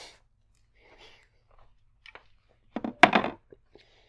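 Tennis overgrip packaging being handled and opened: a few soft rustles and small clicks, then a louder crinkling crunch about three seconds in.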